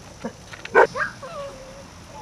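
Six-week-old German Shorthaired Pointer puppy yelping and whining: one loud yelp just under a second in, then a higher cry and a drawn-out whine that slowly falls.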